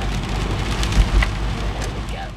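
Rain striking the windshield and roof of a moving car, heard inside the cabin over a steady low road rumble, with a few sharper drop ticks and a low bump about a second in.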